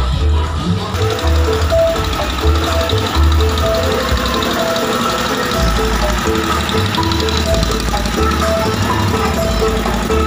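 Loud music played through a vehicle-mounted stack of large speaker cabinets: heavy pulsing bass under a melody of short, repeated notes.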